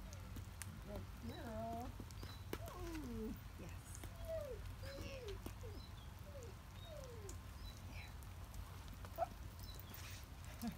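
A person's wordless vocal sounds: a rising-and-falling tone, then a string of short falling calls. There are a few sharp clicks, and a louder one near the end.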